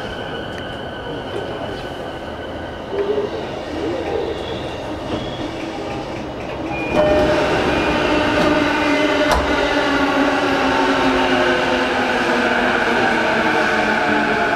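Running sound heard inside a JR East E233-series electric motor car, MOHA E233-53: a continuous rumble of the train under way with a faint whine from the traction motors and inverter. About seven seconds in, the sound gets louder and a set of steady motor whine tones comes in and holds.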